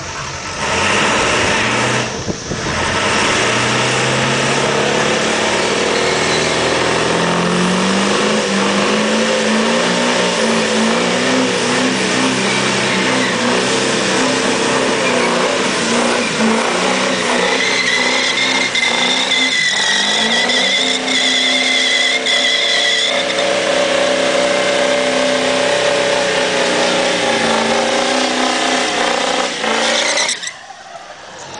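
Diesel Ford pickup engine revved up and held at high revs during a burnout, with the rear tyres spinning on the pavement. The engine note climbs over the first several seconds, then holds. A high wavering squeal runs for several seconds about two-thirds of the way through.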